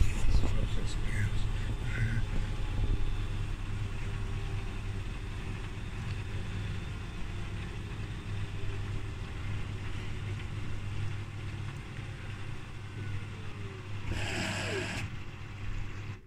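Beko front-loading washing machine's drum and motor running through the interim spin between the wash and the first rinse: a steady low hum that slowly winds down and gets quieter as the drum slows. Near the end comes a short burst of hissing rush as the machine begins to fill for the rinse.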